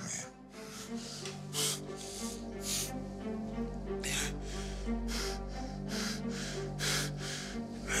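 Tense background music with a sustained low drone, over an injured man's heavy breathing in short, noisy gasps about once a second.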